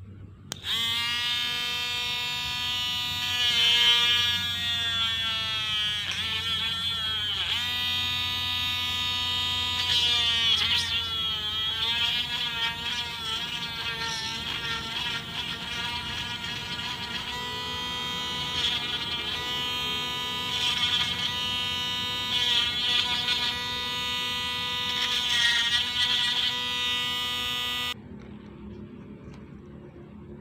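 BEF rotary tool with a small drill bit running at high speed, drilling into a thin metal strip. Its whine starts about half a second in and sags in pitch a couple of times as the bit bears down on the metal.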